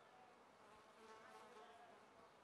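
Near silence, with a faint insect buzz in the second half.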